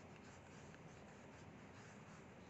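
Faint scratching of a light blue coloured pencil on drawing paper as water strokes are shaded in, barely above room tone.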